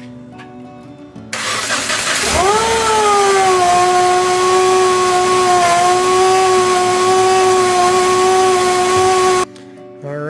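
A Subaru FB25 flat-four with a newly fitted belt-driven Eaton M65 supercharger is cranked and started for the first time. It catches about two seconds in, its pitch sweeping up briefly before settling to a steady idle with a high, even whine from the supercharger and belt drive. The sound cuts off suddenly near the end.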